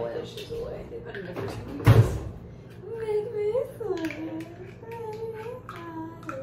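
Young women's voices, drawn out and sliding in pitch in the second half, with one sharp, loud thump about two seconds in.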